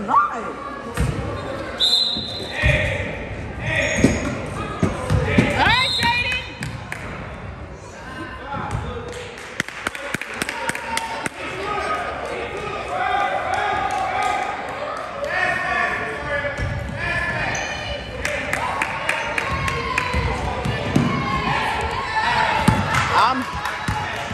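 Basketball game in a gym: a basketball bouncing on the hardwood court, sneakers squeaking now and then, and voices of players and spectators echoing in the hall.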